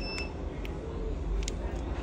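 A short electronic beep, a single steady high tone lasting about a third of a second, right at the start. It is followed by a few faint small clicks over a steady low hum.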